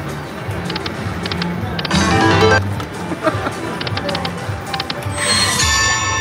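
Buffalo-themed slot machine spinning its reels: electronic jingles and chimes, with clusters of quick high ticks and a bright burst about two seconds in, over the steady din of the casino floor. A bright rising chime sounds near the end.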